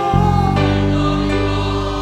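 Live worship music: a band with violin and keyboard plays under group singing, and a deep sustained bass comes in just after the start.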